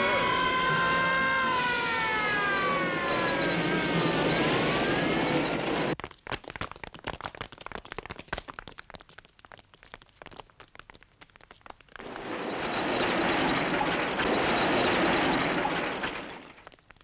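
A siren wailing, its pitch sliding slowly down and back up, until it cuts off about six seconds in. A rapid, irregular run of sharp cracks and knocks follows, then a broad rush of noise swells up near the end.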